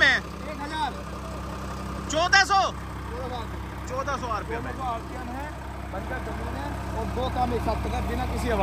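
Massey Ferguson tractor's diesel engine running steadily at about 1500 rpm under load, driving a rotary tiller-ridger through hard ground in low first gear.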